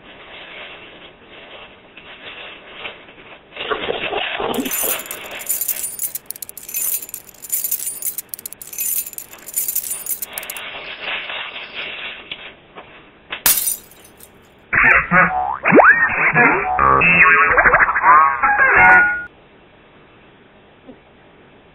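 Paper wrapper rustling and crinkling as it is handled, then a sharp crack, then several seconds of loud music with sliding notes near the end.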